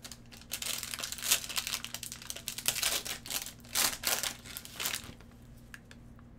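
Foil trading-card pack wrapper crinkling as gloved hands tear it open and pull it off the cards, with several louder crackles. It stops about a second before the end.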